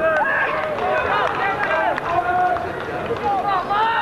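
Several voices shouting and calling over one another at an outdoor football match, from players and spectators close to the pitch, with no words standing out.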